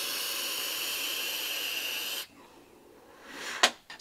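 Airflow hissing through the air holes of a Joyetech eGo One Mega sub-tank vape as it is drawn on, steady for about two seconds and then cutting off suddenly.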